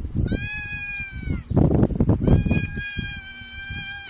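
Impala fawn bleating in distress while seized by cheetahs. There are two long high calls, each holding one pitch and dropping at the end, the second longer than the first. Between them comes a rough, low scuffling noise that is louder than the calls.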